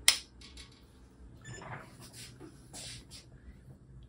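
A single sharp click of a rocker power switch being flipped on: the Components switch on the Zeiss LSM 900 microscope's power supply unit. A few faint rustles follow.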